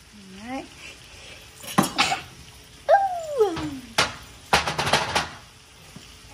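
Sharp clinks and knocks of a metal utensil against a stainless skillet and cutting board while diced vegetables are added to onions cooking in butter, with a faint sizzle underneath. Midway there is one drawn-out call that slides down in pitch.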